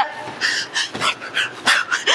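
Breathy laughter: a few short, airy, unvoiced bursts of a woman giggling.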